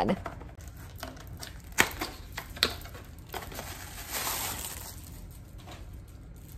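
A spray-bottle box and its packaging being handled: crinkling with a few sharp clicks and knocks in the first three seconds, then a soft hiss about four seconds in.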